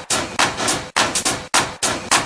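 Vogue ballroom dance-mix percussion: a fast run of sharp, crashing hits, about five a second, with brief hard cuts between some of them.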